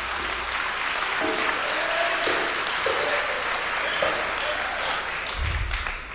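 An audience applauding steadily after a line of a speech, easing off near the end, with a low thump shortly before it stops.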